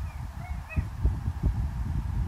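Wind rumbling on the microphone, with a few brief, faint high-pitched squeaks in the first second.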